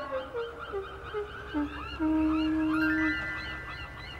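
Background score: a melody of held notes stepping down in pitch, then a louder sustained chord from about halfway, with quick little chirps repeating above it.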